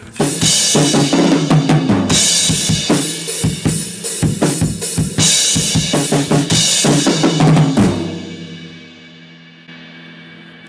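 Rock drum kit played hard: bass drum, snare and repeated crash cymbal hits. The playing stops about eight seconds in and the kit rings out.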